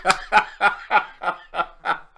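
A man laughing heartily, a steady run of short laughs at about three a second.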